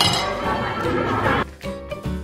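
A sharp clink of tableware right at the start, with voices, until about a second and a half in. Then background music with a steady low pulse.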